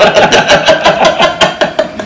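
Men laughing heartily, a rapid run of short ha-ha pulses that trails off near the end.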